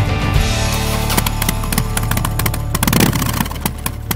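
Rock music playing. From about a second in it turns into a busy run of sharp clicking hits over a steady low hum, dipping in level near the end.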